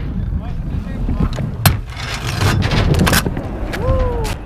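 Small hard wheels rolling over rough asphalt with a steady low rumble, broken by a few sharp clacks around the middle.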